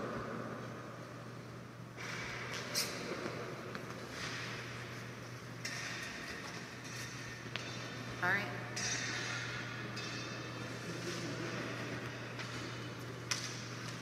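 Faint, indistinct voices in a large hall over a steady low hum, with a few brief clicks and knocks, the loudest about eight seconds in.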